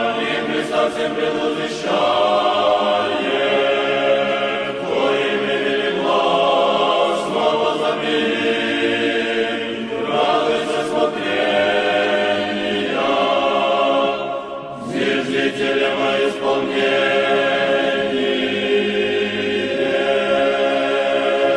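Orthodox church choir singing a cappella in held chords that change every second or two, with a brief break about three-quarters of the way through.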